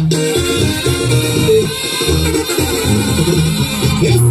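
Live Mexican band music for dancing, loud and continuous, with a steady rhythm and a repeating bass line under the melody.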